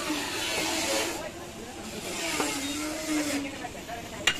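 Indistinct background voices with wavering pitch over a steady hiss of street and traffic noise.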